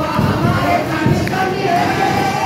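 Congregation singing a worship song together over music with a steady beat.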